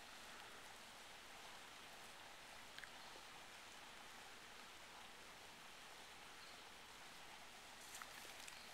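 Near silence: a faint, steady background hiss of outdoor air, with one faint click about three seconds in.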